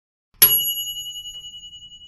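A single high-pitched bell ding, a subscribe-notification bell sound effect, struck about half a second in and ringing out slowly with a fast pulsing wobble as it fades.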